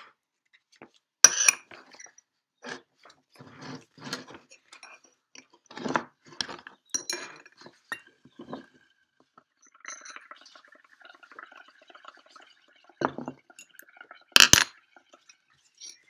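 Scattered light clinks and knocks of ceramic paint pots and a bowl against a wooden table, with soft bubbling from a straw blown into soapy paint, and a sharper knock near the end.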